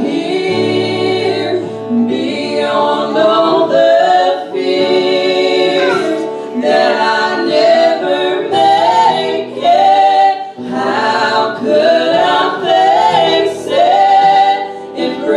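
A small group of women and a man singing a gospel song together into microphones, the women's voices leading, over steady low accompaniment notes.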